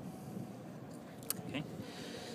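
Steady outdoor background noise with one sharp click just past a second in; a man says "okay" near the end.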